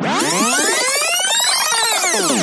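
Synthesized sweep effect used as a transition in a dance music mix: a dense cluster of tones rises in pitch and falls back down, starting suddenly after a brief silence.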